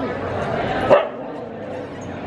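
A husky gives one short, sharp yip about a second in, over background voices of a crowded hall.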